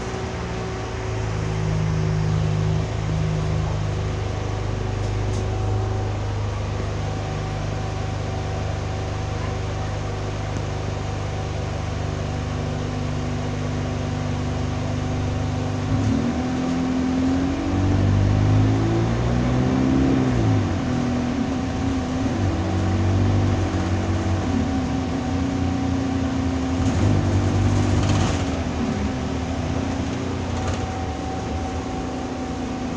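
Alexander Dennis Enviro200 single-deck bus's diesel engine heard from inside the saloon, idling steadily, then pulling away about halfway through, its pitch rising and falling several times as it accelerates through the gears.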